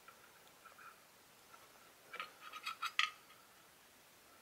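Faint scrapes and light clicks of an inspection camera's probe and cable rubbing and tapping against parts inside an old tube radio receiver, with a short cluster of them about two to three seconds in.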